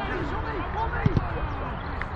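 Players shouting across a grass football pitch, with a football struck with a thud just after a second in as a shot is taken on goal.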